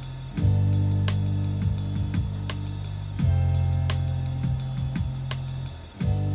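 Background music: an instrumental beat with a drum kit over held bass notes that change about every three seconds.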